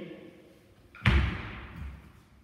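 A single heavy thump about a second in, a foot stamping down on a sports-hall floor as a fencer lunges in, with a short echoing tail.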